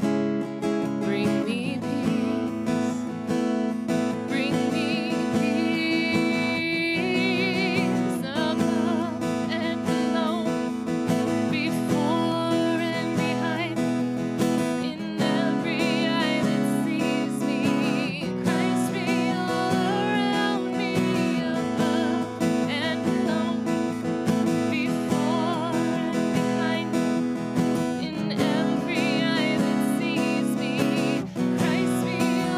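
A woman singing a worship song with vibrato in her voice, accompanying herself by strumming an acoustic guitar.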